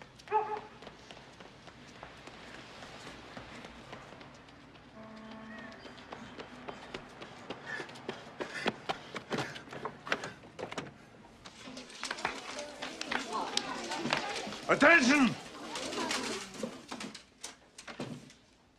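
A film soundtrack: a run of sharp knocks and clicks, then loud wordless voices peaking about fifteen seconds in.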